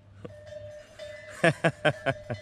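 A person laughing in about four short bursts in the second half, over a faint steady hum.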